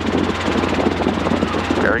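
Robinson R22 helicopter's engine and rotor running steadily, heard from inside the cabin as a loud, fast-pulsing drone over a low hum.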